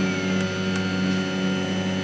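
Anet A6 3D printer running: its stepper motors give a steady, multi-toned whine as the print head lays filament on the bed.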